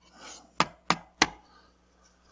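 A soft rustle, then three sharp clicks about a third of a second apart, from a whiteboard marker and eraser being handled against the easel's tray and board.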